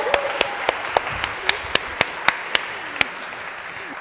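Audience applause dying away, with one set of sharp, close claps about four a second that stop about three seconds in.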